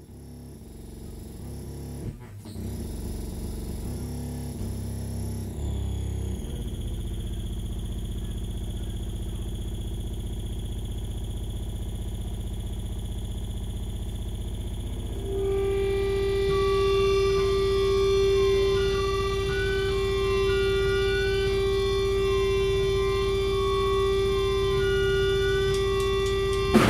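Distorted guitar drone and amplifier feedback: a low, steady hum that swells over the first few seconds, joined about 15 seconds in by a loud sustained feedback tone with warbling higher tones above it.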